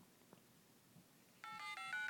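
Touch-tone (DTMF) keypad beeps from an HTC HD2's dialer as number keys are tapped: a quick run of short two-note tones, one per key, starting near the end after faint taps.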